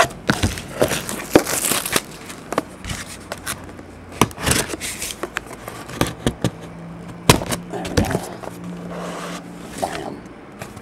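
Hands tearing the plastic shrink wrap off a sealed Leaf trading card box and opening it: crinkling plastic, scrapes and many sharp clicks and snaps of the wrap and box.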